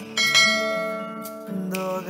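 A bright bell chime that strikes about a quarter-second in and rings out, fading over about a second. Soft guitar music comes back near the end.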